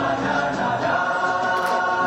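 Dance music with a chorus of voices singing long held notes.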